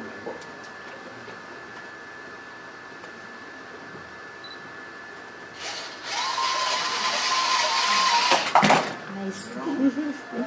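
Polymax 9000 robot's electric drive motors whining as it dashes across carpet to the beacon: a rushing noise with a steady whine, held for about three seconds, ending in a sharp knock. Before it, several seconds of quiet room tone with a faint steady high tone.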